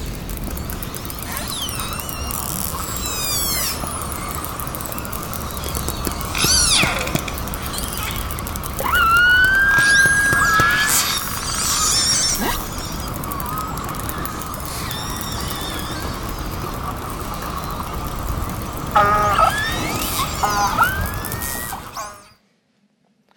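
Hydrophone recording from beneath Antarctic sea ice: underwater calls of marine mammals, a series of whistles, rising and falling glides and descending trills, with one long rising whistle midway and a cluster of trills near the end, over a steady hiss.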